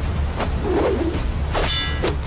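A short hit about half a second in, then a metallic clang that rings briefly near the end, over a low steady drone.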